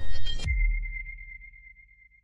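Electronic logo sting: a brief loud burst, then a single high, sonar-like ringing tone over a deep bass rumble, fading out over about a second and a half.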